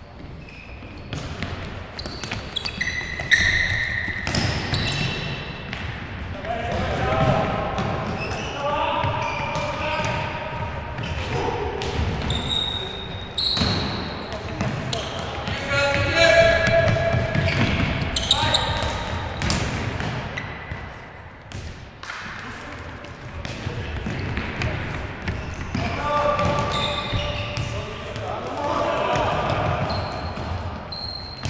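Indoor five-a-side football being played in an echoing sports hall. Players shout and call to each other, and the ball is kicked and bounces with sharp thuds off the hard court.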